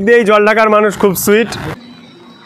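A man talking loudly in Bengali, cut off abruptly a little before the end and followed by faint, steady outdoor background noise.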